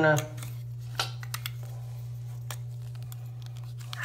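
A few faint, sharp clicks and light handling noises of small plastic kit pieces being picked up, over a steady low hum.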